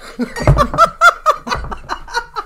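Several people laughing together in a run of quick ha-ha pulses, with two low thumps partway through.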